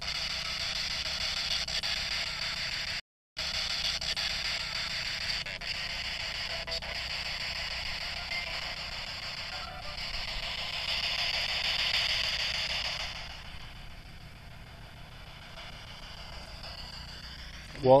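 A steady high hiss with no voices, cutting out completely for a moment about three seconds in, then dropping to a fainter hiss about two-thirds of the way through.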